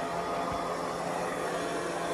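Digital Essentials robotic vacuum cleaner running on low-pile carpet: a steady motor whir and hum, with a faint low knock about half a second in.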